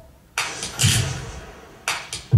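Sparse rhythmic percussion in the dance soundtrack: a sharp, hissing hit followed by a deep thump, repeating about every one and a half seconds.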